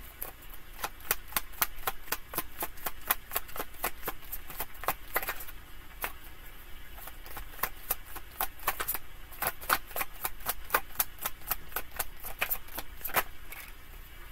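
A deck of tarot cards being shuffled in the hands: a run of short card clicks, several a second, thinning for a few seconds midway.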